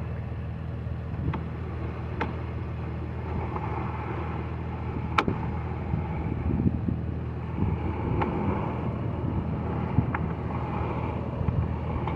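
A steady low motor hum, with a few sharp clicks scattered a couple of seconds apart.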